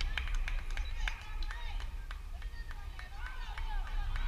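Wind rumbling on the microphone, with distant voices of players and spectators calling out at a softball game. A quick series of sharp claps or clicks comes in the first second and a half.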